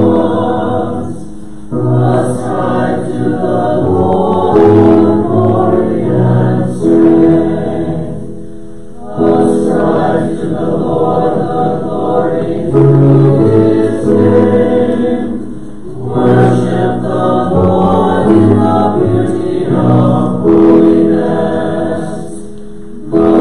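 A congregation singing together in sung phrases several seconds long, each followed by a brief dip before the next phrase.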